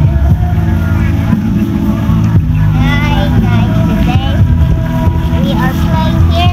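Children's high voices calling out from about three seconds in, over a loud, steady low rumble.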